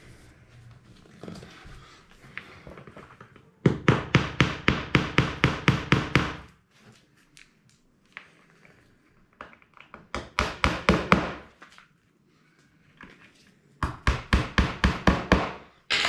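Hammer tapping fittings into a pressed-wood flat-pack cabinet panel: three runs of quick, even taps, about five a second, with short pauses between them.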